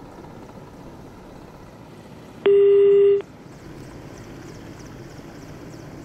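Faint hiss of an open telephone line, broken about halfway through by one loud, steady beep of a telephone line tone lasting under a second: the sign of the phone link to the reporter failing.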